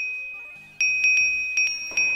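A high, bell-like ding rings and fades, then strikes again a little under a second in and is struck in a quick run of repeated dings.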